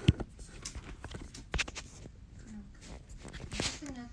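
Handling noise from a smartphone being moved and steadied: a few sharp knocks near the start and another about a second and a half in, with small taps and a short rustle near the end.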